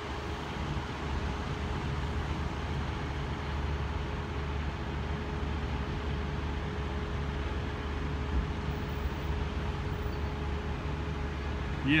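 Steady low rumble of vehicles, with a faint steady hum over it.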